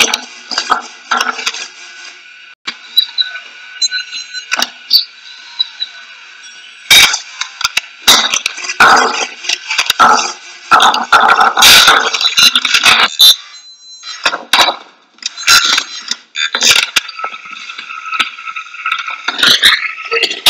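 A video's soundtrack playing through a phone's small speaker, with little bass: a steady high ringing tone under irregular sharp knocks and clatters.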